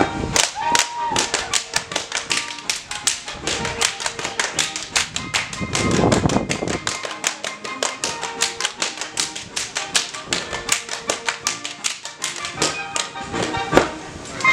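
Schuhplattler dancers' hand slaps and claps, a rapid run of sharp smacks about four to five a second, over waltz music.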